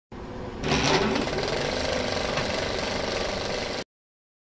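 Film projector running with a rapid, steady mechanical clatter, getting louder about half a second in and cutting off suddenly just before the end.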